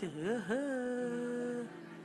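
A drawn-out hummed note from a voice through a microphone. It swoops up and down at first, then holds steady for about a second before it breaks off near the end.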